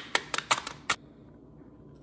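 A quick run of about six small, sharp clicks in the first second: hard sugar sprinkles and a plastic sprinkle tub being handled over a plate.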